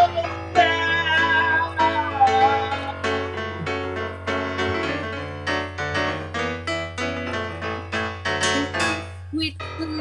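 Piano-style keyboard accompaniment playing a busy run of notes and chords, gradually getting quieter, over a steady low hum.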